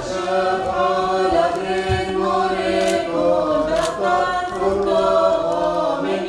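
Sung liturgical chant with long held notes that change pitch every second or so, over a steady low tone.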